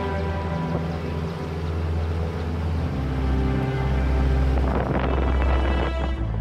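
Background music with slow, sustained tones. Near the end a brief rush of noise rises under it.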